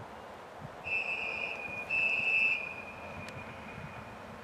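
Diesel railcar sounding two short, high-pitched horn blasts, the second trailing off into a fainter held tone, over a steady low background rumble.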